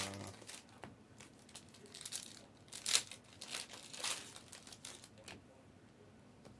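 Plastic wrapping on trading-card blaster boxes and card packs being handled and torn open by hand: a few short crinkles, about a second apart.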